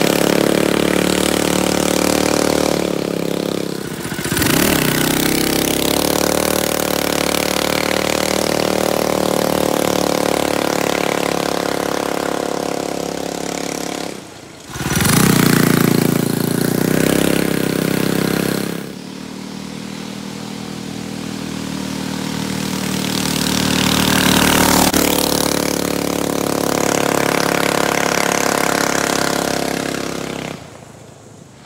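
Stage 2 Predator 212 single-cylinder engine on a small Chinese four-wheeler with a 30 series torque converter, revving and running at speed as the ATV rides along and past. The engine pitch rises and falls, and the sound cuts abruptly a few times. It is loudest about halfway through, as the ATV passes close by.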